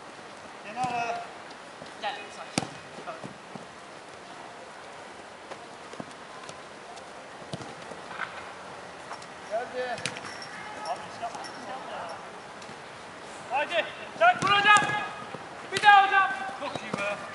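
Footballers shouting and calling to each other during a small-sided game, with a few sharp thuds of the ball being kicked; the calls come in scattered bursts and grow busier near the end.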